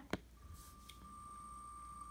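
A soft tap, then a faint, steady, high electronic tone that holds on, as from the phone while the on-screen wheel spins.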